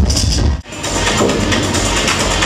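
Loud dub techno playing through a club sound system, with a steady beat and hi-hats. About half a second in, it drops out sharply for a moment, then comes back with lighter bass.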